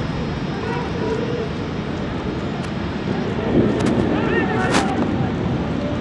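Pitch-side football match ambience: a steady rumbling noise, with players' shouts about three and a half to four and a half seconds in and a single sharp knock just after.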